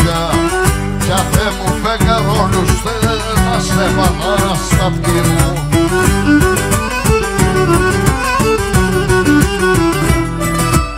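Live Cretan folk music in an instrumental passage: a bowed Cretan lyra plays an ornamented melody over strummed laouto and mandolin accompaniment and a steady percussion beat.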